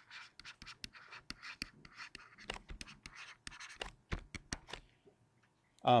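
Stylus writing on a tablet: a run of short scratchy strokes and light ticks as words are handwritten, stopping about a second before the end.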